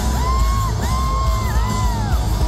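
Rock band playing live through an arena PA. Over the band, three high held notes of about half a second each slide in and out one after another, the last one falling away near the end.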